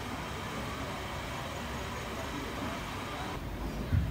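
Steady background noise of a hall with faint, indistinct voices. Near the end it changes abruptly to a duller rumble, and there is a low thump.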